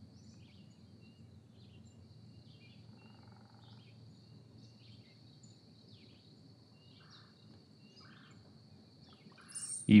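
Very faint room tone during a silent pause, with scattered faint bird chirps and a steady faint high-pitched whine.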